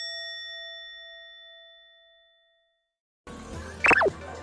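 A single chime sound effect, struck just before, rings on with a clear tone and overtones and fades away to silence over about two and a half seconds. Then background music and room noise come back in about three seconds in, with a short, loud sound sliding down in pitch near the end.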